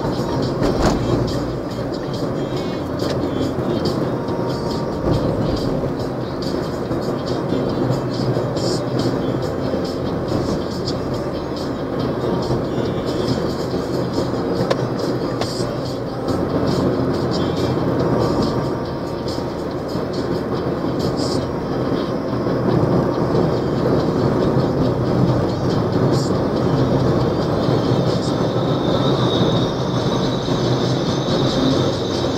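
Steady road and engine noise inside a moving vehicle on a highway, with music playing over it.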